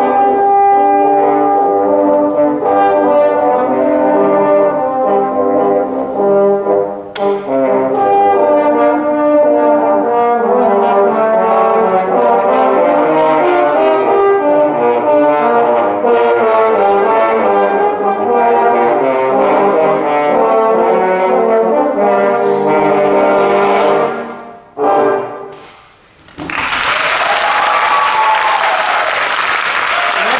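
A quartet of French horns playing a piece together in harmony. The music stops about 24 seconds in with a short final note a moment later, and applause breaks out about two seconds after that.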